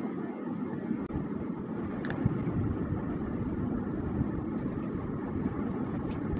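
A steady low background rumble, with a few faint clicks.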